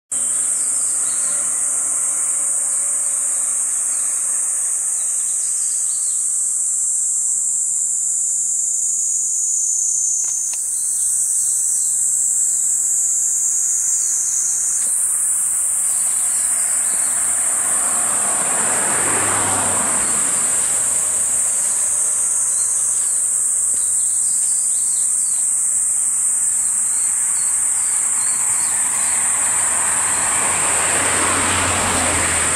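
A loud, steady, high-pitched chorus of insects shrilling in summer woodland. A vehicle passes about two-thirds of the way through, its noise rising and falling, and another approaches near the end.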